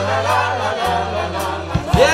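A song in full swing: several voices singing together in chorus over held bass notes.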